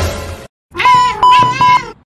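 A short noisy sound-effect burst, then a cat's drawn-out meow lasting about a second, with a steady tone alongside it that breaks off twice.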